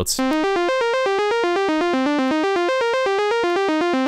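Thor software synthesizer in Reason playing a fast, steady sixteenth-note arpeggio of random notes from the C natural minor scale at 120 BPM, about eight short notes a second, in a bright tone. It stops just after the end.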